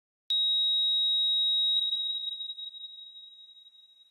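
A high-pitched pure electronic tone, a sound-design effect, that starts suddenly about a third of a second in, holds steady for about a second and a half, then fades away.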